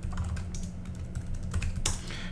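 Computer keyboard typing: a run of quick keystrokes entering a username and password at a terminal login prompt, with one louder key press near the end.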